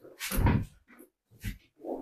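Creaks, rustles and knocks of a padded chiropractic treatment table as a person climbs onto it and kneels, in three short bursts.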